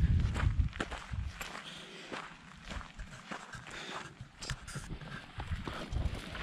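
Footsteps of people walking on gravel and rubble and through dry weeds: irregular crunching steps.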